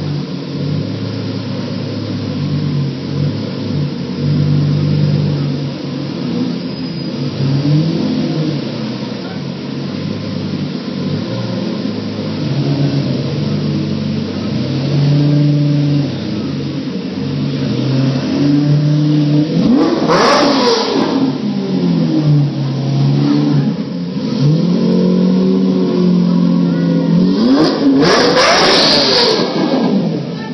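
Lamborghini engine running at a low, steady idle as the car pulls slowly away, then revved twice, about two-thirds of the way in and again near the end, each rev rising and falling back.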